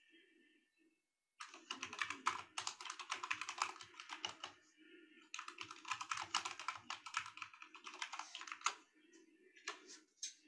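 Rapid typing on a computer keyboard, in two runs of about three seconds each with a short pause between them, and a few single key clicks near the end.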